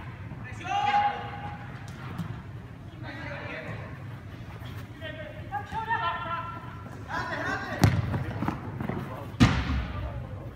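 Players shouting and calling out on an indoor soccer pitch, with two sharp thuds of a kicked ball, the loudest sounds, near the end.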